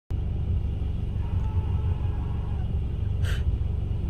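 Steady low rumble inside a parked car, typical of its engine idling, with a brief hiss about three seconds in.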